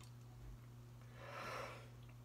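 A trumpeter's soft breath drawn in through the mouth, swelling for about half a second, to prepare for a phrase. A faint steady low hum sits underneath.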